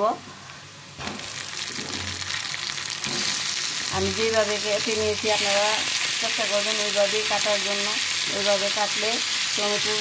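Onion and garlic frying in hot oil in a pan, with tomato pieces going in. The sizzle starts about a second in and gets louder in two steps, around three and five seconds in, as the wet tomato hits the oil. A voice is heard over it from about four seconds in.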